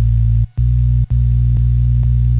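Bass sample played from the melodic pads of a Teenage Engineering PO-33 K.O! pocket sampler. Three deep, held notes follow one another, separated by brief gaps; the last rings longer.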